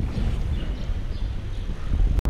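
Steady low rumble of wind on the camera microphone while riding a bicycle along a street.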